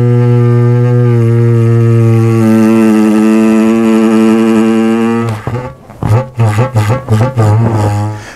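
Balloon bagpipe: air squeezed from a latex balloon through its stretched neck over a vacuum cleaner tube, the vibrating balloon film giving a steady, reedy drone. The drone stops about five seconds in, followed by a few short broken bursts as the air runs out.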